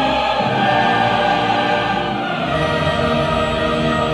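Opera chorus singing with full orchestra in a loud, sustained passage.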